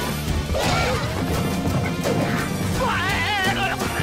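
Cartoon soundtrack: music under slapstick sound effects, with crashes and whacks in the first second. About three seconds in, a wavering high-pitched squeal.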